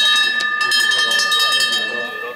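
Last-lap bell: a hand bell rung rapidly and repeatedly, clanging with several ringing tones, to signal the final lap of the 800 m as the runners pass.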